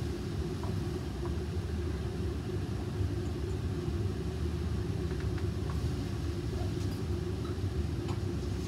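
Steady low rumble of a laboratory fume hood's ventilation running, with a few faint ticks.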